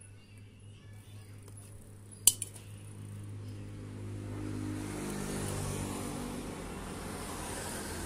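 A motor engine running nearby, its sound swelling from about three seconds in over a steady low hum. One sharp click a little after two seconds.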